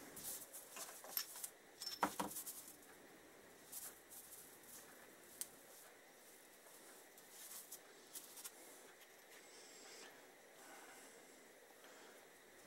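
Faint handling noise: abrasive scouring pads being rubbed, stacked and pressed together on a workbench. Scattered light clicks and scrapes come in clusters, most of them in the first two and a half seconds and a few more later on.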